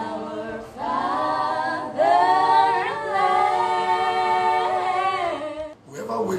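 A group of young voices singing a cappella in chorus, with long held notes; the singing stops suddenly near the end.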